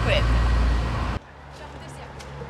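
A loud low rumble of street noise, with a brief voice at the very start. It cuts off abruptly about a second in, leaving much quieter street noise with a low steady hum.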